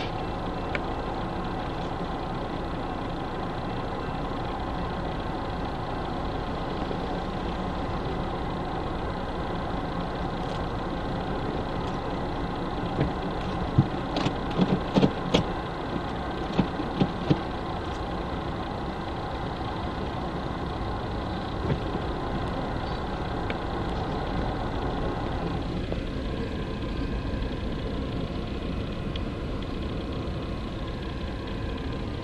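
BNSF manifest freight train's cars rolling past a grade crossing, a steady rolling noise heard from inside a waiting car, with a run of sharp clanks about halfway through.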